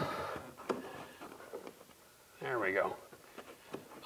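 Light clicks and taps of crown molding being pressed and shifted against a ceiling corner and a wooden jig, with a short murmur from the man about two and a half seconds in.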